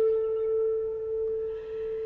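A flute holds one steady note that thins to an almost pure tone and fades toward the end. A soft airy hiss joins about halfway through.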